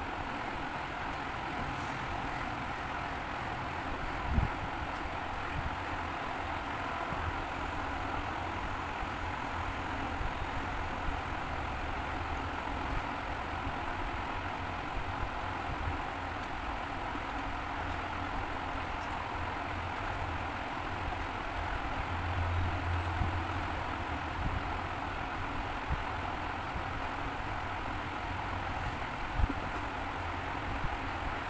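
Steady low rumble and hiss of background noise, with two sharp knocks, one about four seconds in and one near the end.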